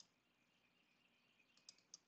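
Near silence, with a few faint computer mouse clicks: one at the start and two close together near the end.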